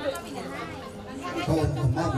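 Chatter of several voices talking at once. About one and a half seconds in, a louder, deep sound comes in.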